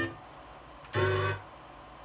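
Akai S2000 sampler playing back a short pitched musical sample, one brief note of under half a second about a second in, as the loaded samples are auditioned one after another.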